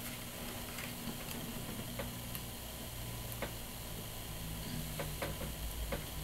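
Scattered faint clicks and taps of fingers handling the small plastic body of an SJ4000 action camera while tucking its internal wires, over a low steady hum.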